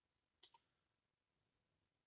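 Two quick computer mouse clicks about half a second in, a double-click opening a spreadsheet cell for editing, against near silence.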